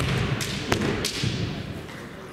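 Kendo bout: a sharp clack of bamboo shinai at the start, then dull stamping thuds of footwork on the hall floor and two more quick shinai clacks in the first second as the fencers close in.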